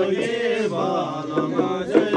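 Buddhist chanting: voices intoning a mantra over a steady low drone, with a sharp percussive strike near the end.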